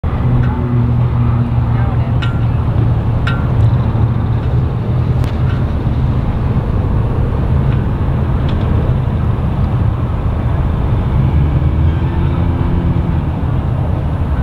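Engines idling with a steady low rumble, from the boat by the dock and the pickup truck at the water's edge, with a few faint clicks.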